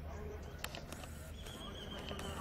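Twin Alco WDM-3D diesel locomotives chugging under load as they pull away, with a low steady engine rumble. A few sharp clicks come in the first half, and a wavering high whine starts about one and a half seconds in.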